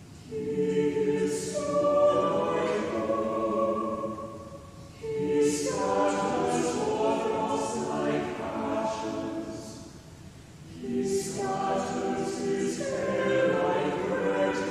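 Mixed church choir singing in three phrases, each a few seconds long, with a short breath pause between them.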